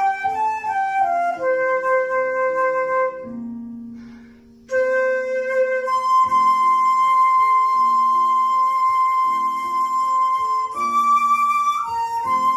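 Concert flute playing a slow melody: a quick falling run and a held note, a break of about a second and a half, then long held notes, over a softer, lower accompaniment.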